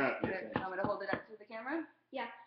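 Voices talking, with a few light taps of hand tools chiseling at a dinosaur excavation kit's dig block.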